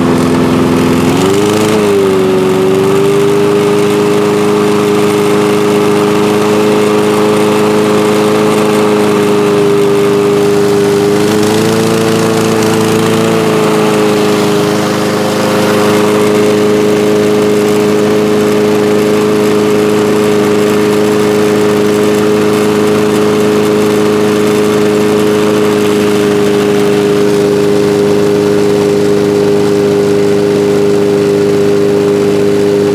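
Honda push mower's single-cylinder four-stroke engine running steadily on a work stand after a carburettor and governor adjustment. Its pitch wavers briefly about a second and a half in, and again between about eleven and thirteen seconds in, then holds steady.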